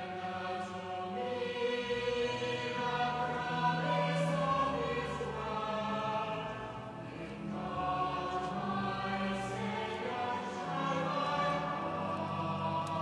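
Choral music: a choir singing slow, sustained chords that change every second or two.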